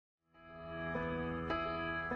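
Soft ambient background music fading in after a brief silence: sustained chord tones, with new notes coming in about a second in and again near the end.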